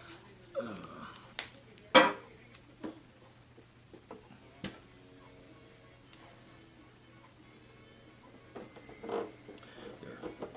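Handling noises from a roll of tape being worked and a turntable's tonearm being taped down: scattered clicks and knocks, the loudest about two seconds in, with more near the end.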